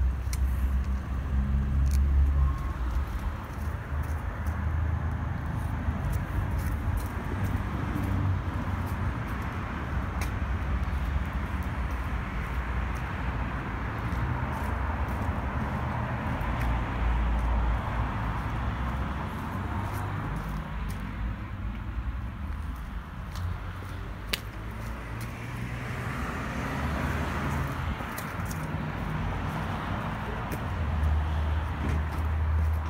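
Steady background road-traffic noise, with an uneven low rumble and a few faint clicks.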